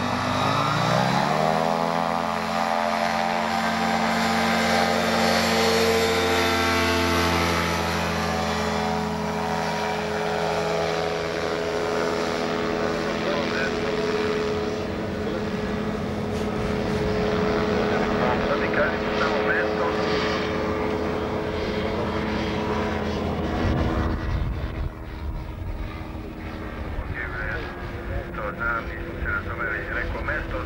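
Propeller engine of a motorized hang glider (trike) opening up to full power for takeoff: its pitch rises over the first two seconds. It then holds a steady drone as the aircraft climbs away, changing slightly near the end.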